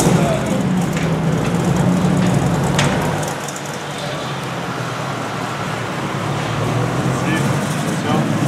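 Shelby GT500 'Eleanor' V8 idling with a steady low burble as the car creeps out at walking pace. It drops somewhat a few seconds in and comes back near the end.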